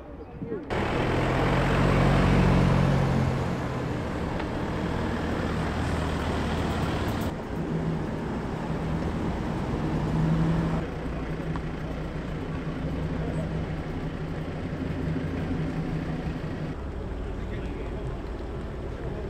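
Car engines running at low speed as cars drive slowly across a car park, in several short clips that cut abruptly into one another. Near the end it is a Volvo 960 saloon creeping into a parking space.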